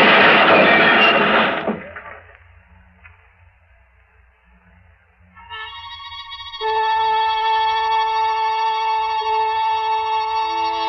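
Radio-drama sound effect of a car skidding off an icy curve and crashing: a loud noisy rush that dies away about two seconds in. After a nearly quiet pause, a sustained musical chord comes in about five seconds in, and a low note joins it a second later.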